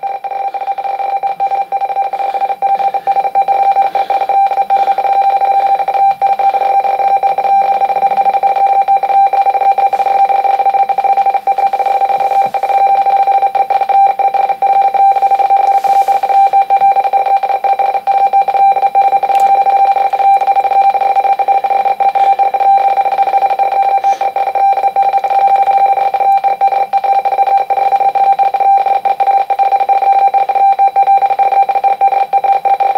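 RTTY radioteletype signal from an Icom IC-718 shortwave receiver in sideband: steady tones a little under 1 kHz and near 500 Hz, keyed in a fast, even chatter. It is a 66 words-per-minute teleprinter transmission of a marine weather bulletin.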